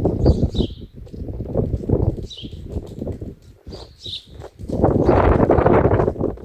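House sparrow chirping: short high chirps every second or so, over a low uneven rumble, with a louder rushing noise in the last second or so.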